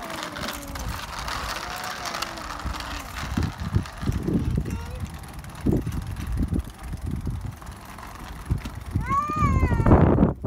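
A child's high voice calls out near the end, rising then falling in pitch, over uneven low rumbling outdoor noise.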